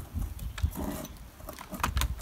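A few light clicks and rustles of a gloved hand handling compost over a plastic seed tray, over a low, uneven wind rumble on the microphone.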